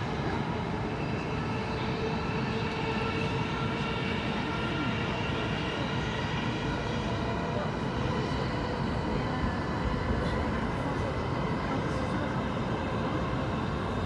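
Steady running noise of an electric commuter train heard from inside the carriage: a constant rumble with a faint steady whine over it.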